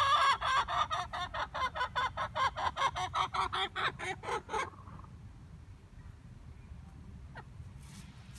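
A hen clucking rapidly, about five clucks a second for some four and a half seconds, then stopping. The owner takes the calling for a hen straining to lay an egg.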